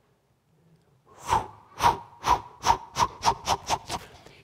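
Whooshing sound effect for a slung stone flying: about a second of quiet, then about nine short whooshes that come faster and faster, with a faint steady whistle-like tone under them.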